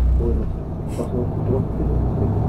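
City bus engine and road rumble heard from inside the bus, with a heavy truck passing close alongside. The truck's deep rumble is loudest at the start and eases off after about half a second. A brief hiss comes about a second in.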